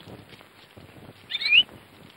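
A single short, high chirp of a few quick rising notes about one and a half seconds in, like a small bird's call, over faint background noise.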